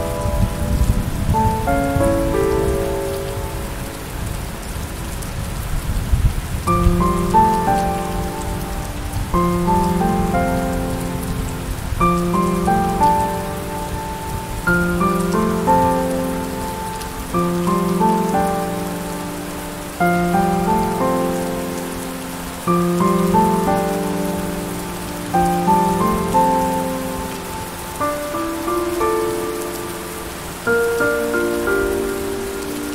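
Steady rain hiss under gentle piano music, a slow melody of decaying notes that repeats its phrase about every two and a half seconds. A low thunder rumble sits under the first several seconds and fades out.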